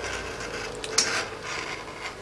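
Leather edge beveler scraping along the edge of a piece of leather, shaving off the corner, with a light click about a second in.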